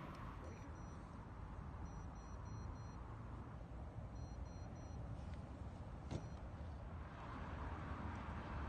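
Faint electronic bite alarm beeping in short groups of quick high beeps, a sign of line movement at the rods, over a steady low rumble. A single soft knock near six seconds.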